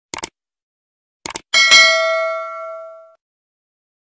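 Subscribe-button animation sound effect: two quick mouse-click sounds, a double click at the start and another a little over a second in, followed by a bright bell ding that rings out and fades over about a second and a half.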